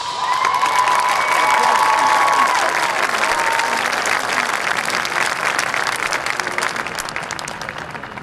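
Crowd in the stands applauding and cheering at the end of a marching band's piece, with high whoops in the first few seconds. The clapping eases slightly near the end.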